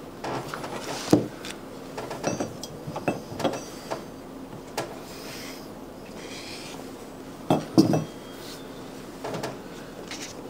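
Clinks and knocks of metal leatherworking tools and leather being handled on a granite slab and plastic cutting board, the loudest knocks about a second in and just before the 8-second mark. A faint scrape between them as a blade cuts a leather strap on the board.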